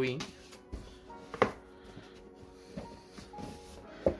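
Cardboard packaging being handled as a red headset box is worked out of its sleeve, with one sharp click about a second and a half in. Faint background music runs underneath.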